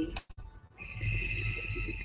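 Glass dab rig being hit: a click, then water bubbling low in the rig with a steady high whistle of air drawn through it for about a second, cutting off abruptly near the end.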